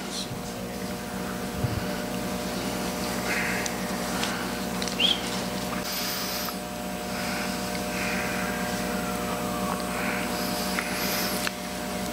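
A steady hum of several held tones, with faint scattered rustles and small knocks over it.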